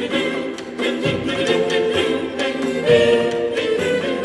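Choir singing early Spanish music of the 15th and 16th centuries.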